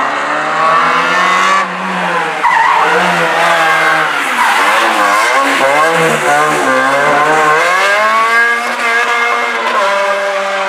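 Opel Astra GSi rally car's four-cylinder engine revving hard. The pitch drops about a second and a half in, swings up and down several times in the middle, then climbs steadily near the end.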